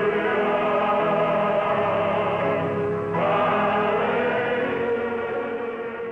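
Choral gospel music: a choir holding sustained chords, with a change to a new chord about three seconds in, then beginning to fade out near the end.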